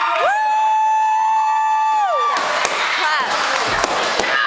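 A single long, high-pitched yell held at one pitch for about two seconds, rising at the start and dropping away at the end, over a cheering crowd. The crowd noise carries on after it, with a few shorter shouts near the end.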